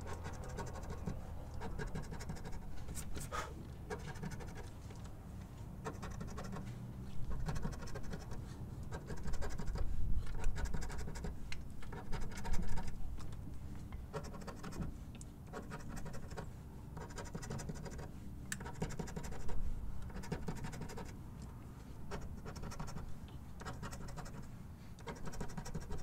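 A coin scratching the coating off a paper scratch-off lottery ticket on a wooden table, in many quick short strokes that come in louder spells with brief pauses between them.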